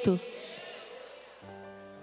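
Quiet pause in a spoken sermon: a woman's voice trails off, then a soft held music chord comes in about one and a half seconds in and sustains.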